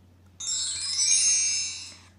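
A bright, high-pitched chiming, tinkling sound that starts suddenly about half a second in and fades away over about a second and a half.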